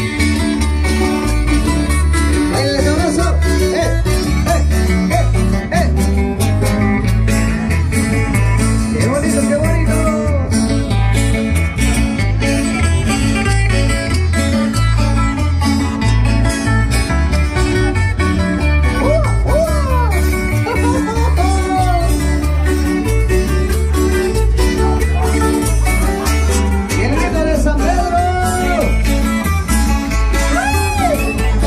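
Live band playing dance music: guitar over a strong, steady bass beat, with a gliding melody line on top.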